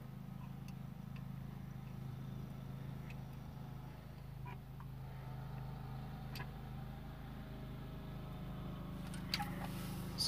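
Riding lawnmower engine running steadily, a low drone heard from inside a car, with a few faint clicks over it.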